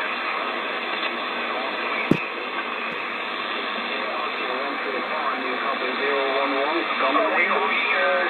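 President Adams AM/SSB CB transceiver's speaker giving out steady hiss and band noise while receiving the 11-metre band, with one sharp click about two seconds in. In the second half a distant station's voice rises faintly out of the noise.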